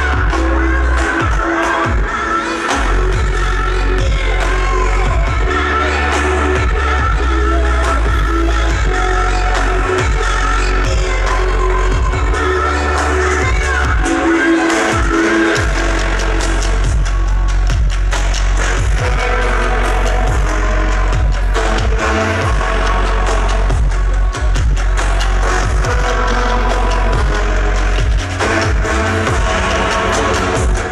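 Loud live electronic dance music over a festival sound system, with heavy sub-bass and a marching drumline's percussion hits layered on top; the bass cuts out briefly a few times.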